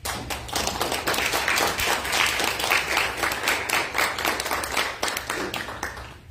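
Audience applauding: a dense patter of many hands clapping that dies away near the end.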